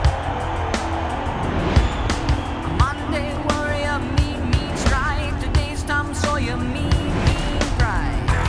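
Trailer soundtrack music with sharp hits, over racing car engines revving, their pitch rising and falling.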